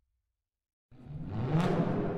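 Silence, then about a second in a logo sound effect starts: a deep rumble with a rushing whoosh that swells quickly and keeps going.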